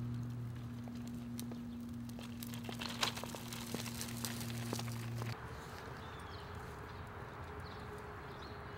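Footsteps and the rolling stroller's wheels clicking and knocking on a concrete sidewalk over a steady low hum. The hum and clicks cut off a little past halfway, leaving quieter outdoor ambience with a few faint bird chirps.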